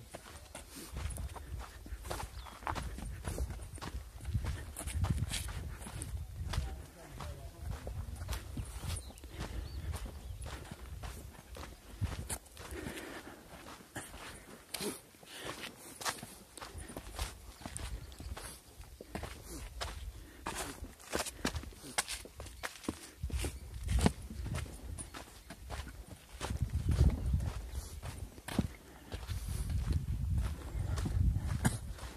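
Footsteps crunching on a sandy, gravelly trail at a walking pace, a string of short irregular scuffs and crunches.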